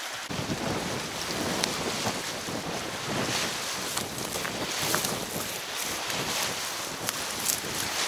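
Gusty wind buffeting the microphone, with waves on a choppy river washing against the bank.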